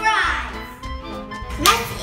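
Children's voices speaking over background music, with a louder exclaimed burst near the end.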